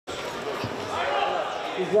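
Indistinct voices echoing in a large indoor sports hall, with a dull thump about half a second in.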